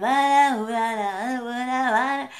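A woman singing a short unaccompanied phrase in long held notes, with a brief dip in pitch about a second in.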